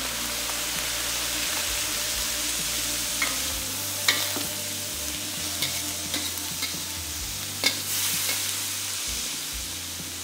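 Water poured into a very hot wok of fried minced beef and onions sizzling hard in a steady hiss, while a metal wok spatula stirs and scrapes against the pan. A few sharp clinks of the spatula on the wok stand out, the loudest about four seconds in and just before eight seconds.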